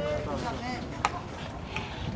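Indistinct voices of people calling out at a youth baseball game, with one sharp click about a second in.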